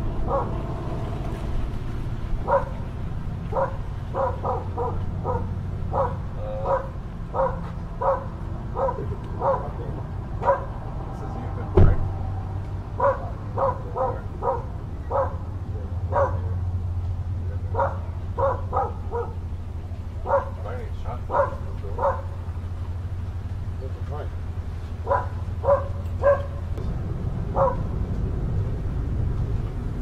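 A dog barking over and over in short runs, with a steady low hum underneath and one sharp knock about twelve seconds in.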